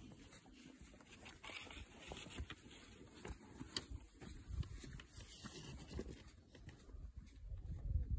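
Faint, irregular soft thuds of footsteps and hooves walking on an arena's sand surface, with a sharp click or two.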